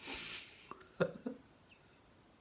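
A man's breathy exhale, then a few short chuckles.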